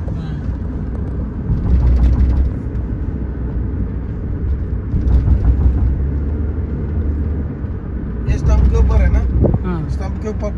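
Road and engine noise of a moving car heard from inside the cabin: a steady low rumble that swells and eases a few times.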